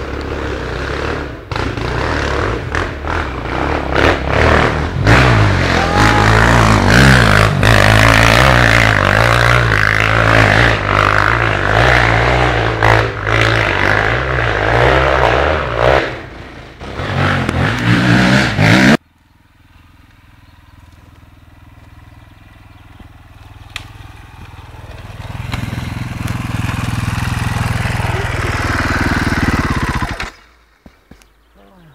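KTM dirt bike engines running and revving hard, loud and uneven as the throttle changes, until they cut off suddenly about two-thirds of the way through. After a quiet stretch an engine sound builds up steadily near the end.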